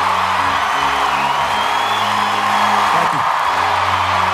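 Audience cheering and applauding over background music with sustained low notes.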